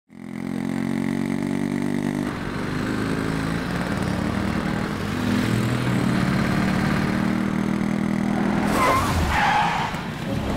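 Motorcycle and truck engines running in street traffic, their pitch shifting as they move. Near the end comes a short tyre screech.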